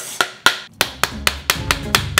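Wooden spoon beating the back of a halved pomegranate to knock its seeds out into a stainless steel bowl. First two spaced knocks, then from about a second in a quicker, even beat of about five knocks a second.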